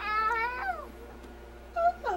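Young infant cooing: one drawn-out, high-pitched vocal call lasting just under a second that wavers and falls away at its end, then a brief second squeak near the end.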